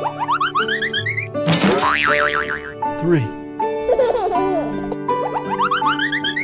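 Cheerful children's background music with cartoon sound effects. Rising whistle-like glides come near the start, then a boing with a wavering trill about two seconds in, and a short falling glide about three seconds in. The pattern starts over near the end.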